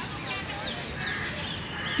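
Birds calling outdoors: a quick series of short, high, falling calls, about three a second, over a steady background hiss.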